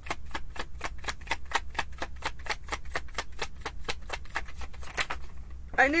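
A tarot deck being shuffled in the hands, the cards clicking in a steady rhythm of about five a second until they stop about five seconds in.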